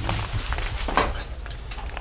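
Footsteps crunching and clattering over rubble of broken roof tiles and rotten timber, with several short sharp knocks, the loudest about halfway through.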